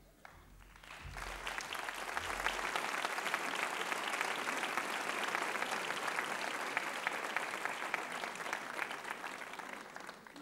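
Studio audience applauding, swelling over the first couple of seconds and thinning out toward the end.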